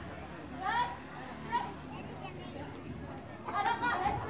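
Children's voices and chatter: a few scattered calls at first, then many voices calling out together near the end.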